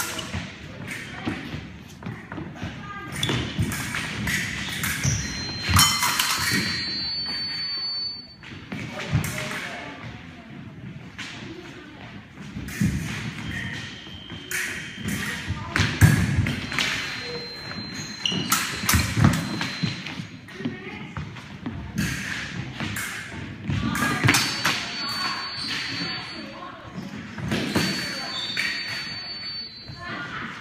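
Épée fencers' footwork thudding and stamping on a wooden gym floor as they advance, retreat and lunge, many uneven thumps echoing in a large hall. Brief thin high ringing tones come and go several times.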